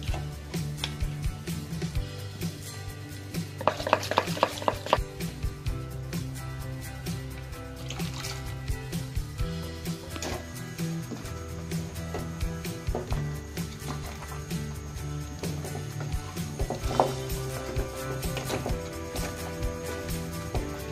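Background music, with a metal utensil clattering against a cooking pot as masala is mixed: a quick run of clinks about four seconds in, then scattered single knocks.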